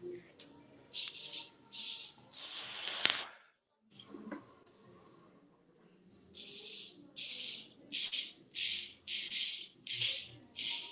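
Filarmonica 14 straight razor drawn over a lathered cheek in short strokes, each a brief rasping crackle of the blade cutting through stubble. A few separate strokes come first, then a steady run of about one stroke every two-thirds of a second. This is the 'song of the blade' that shows the edge is cutting.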